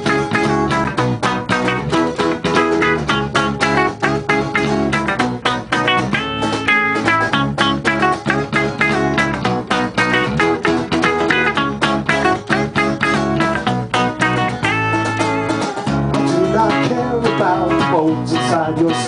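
Live acoustic and electric guitars playing together, the acoustic strummed in a steady, even rhythm: the instrumental intro of a song, without vocals.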